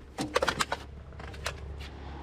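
Handling noise as a LiPo battery pack and its leads are picked up: a quick run of clicks and rustles about half a second in, then a couple of lighter clicks, over a low steady hum.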